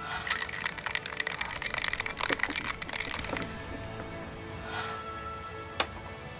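Ice rattling hard inside a stainless steel cocktail shaker being shaken for about three seconds, over background music. A single sharp click near the end.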